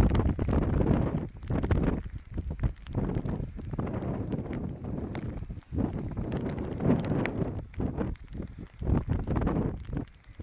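Strong gusting wind buffeting the microphone, a rough low rumble that surges and drops every second or so.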